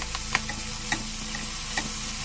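Chicken liver and hearts sizzling in oil in a frying pan, with a few sharp clicks of tongs against the pan as the pieces are turned.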